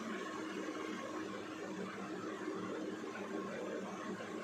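Steady room noise: an even hiss with a faint low hum, with no distinct events.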